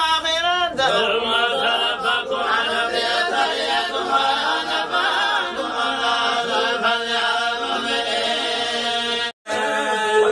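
A group of men chanting Quranic verses together in a melodic, unison recitation (Somali subac). The voices stop abruptly for a moment near the end at an edit.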